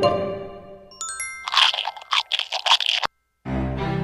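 Cartoon crunching sound effect of a giraffe munching a french fry: a rapid run of crunches lasting about a second and a half, led in by a couple of bright pings. Light children's music fades under it, drops out briefly after the crunching, then starts again near the end.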